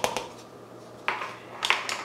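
A few light clicks of a plastic measuring cup knocking against a glass bowl at the start, then two brief soft handling noises as the cup is taken away.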